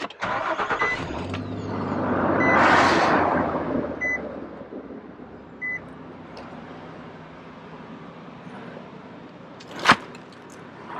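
Pickup truck engine cranking briefly, catching and revving up, then settling to a steady idle. A short dashboard warning chime beeps about every second and a half, and a sharp click sounds near the end.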